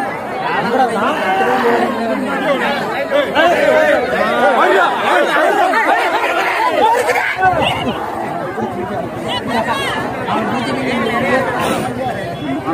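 Dense crowd of many people talking and calling out at once, a continuous babble of overlapping voices.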